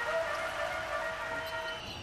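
A horn sounds over crowd noise in the arena: several steady pitches held together for nearly two seconds, cutting off just before the end.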